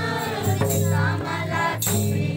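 A group of voices singing a Kurukh folk song in chorus, backed by a mandar barrel drum and jingling percussion, with a sharp hit near the end.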